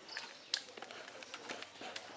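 Faint bird cooing, with a few light clicks and one sharp tap about a quarter of the way in.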